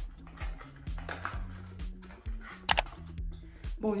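Background music with a steady beat and a repeating bass line. About two and a half seconds in, a sharp crackle: the plastic and cardboard packaging of a small hair-treatment tube being pulled open by hand.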